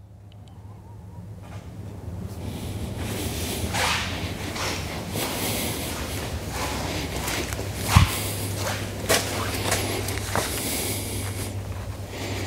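Footsteps and knocks on a hard floor with rustling handling noise, over a steady low hum that swells over the first few seconds; a sharper thump about eight seconds in.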